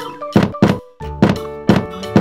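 Cartoon thunk sound effects of domino bricks toppling in a chain, about four knocks in two seconds, over a children's background music bed.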